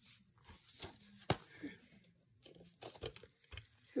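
Plastic DVD case being handled and opened: a series of short clicks and knocks, the sharpest about a second in.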